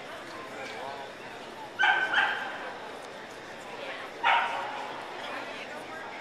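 Dog barking: two quick barks about two seconds in and a third a little after four seconds, over the murmur of voices in a hall.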